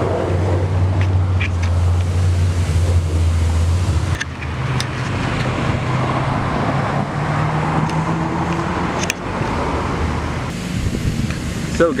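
Road traffic: a vehicle engine hums steadily, then a car drives past on the street about halfway through with a slightly rising engine note and tyre noise.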